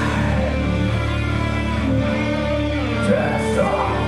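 Live rock band playing an instrumental passage: electric guitar and keyboard over drums and a steady low bass.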